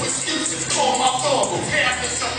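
Live hip hop music over a venue PA: a backing beat with a voice over it.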